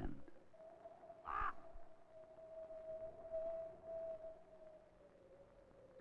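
A common raven calls once, about a second and a half in, over a faint, steady held tone.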